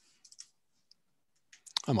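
A few faint, short clicks, then a man's voice starts right at the end.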